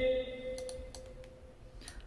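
Computer mouse clicks while vocal notes are edited in Melodyne, clearest near the end, over a steady pitched tone that fades away in the first second and a half.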